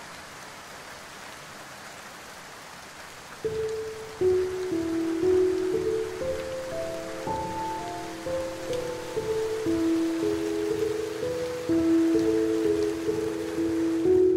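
Steady rain, alone at first; about three and a half seconds in, slow melodic music begins over it, a line of held notes.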